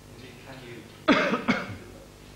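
A person coughing twice, about half a second apart, about a second in.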